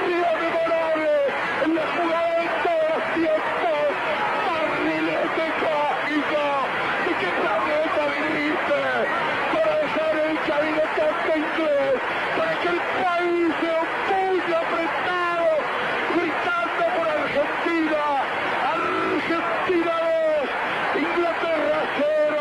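A male football radio commentator shouting Spanish play-by-play over a goal, without a pause. His voice is pitched very high and strained, rising and swooping with emotion.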